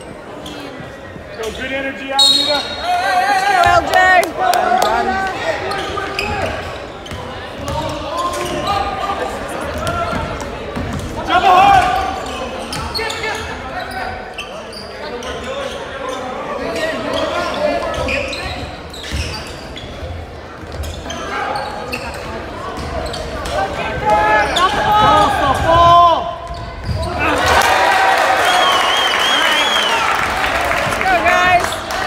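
Basketball being dribbled on a hardwood gym floor amid shouting voices of players and spectators, all echoing in a large gym. The voices grow louder and busier near the end.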